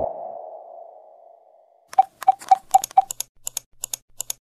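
Intro-animation sound effects: a single pinging tone that fades out over about a second and a half. After a short silence comes a quick run of about ten sharp mouse-click sounds, the first five with a short ping, from the on-screen subscribe, like and bell buttons.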